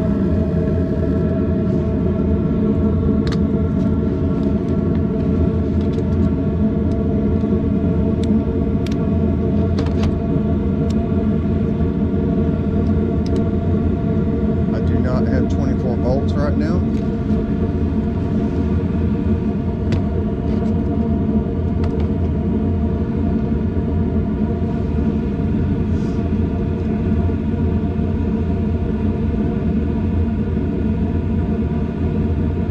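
Carrier 4BGP024 gas pack running after power is restored, a steady motor hum made of several low pitched tones, with a few faint clicks now and then.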